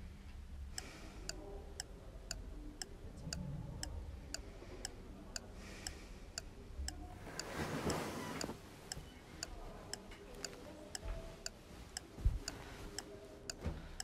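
A clock ticking steadily, about two ticks a second, with a soft rustle a little past halfway and a low thump near the end.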